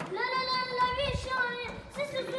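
A young boy singing solo, one long high held note that wavers slightly about a second in.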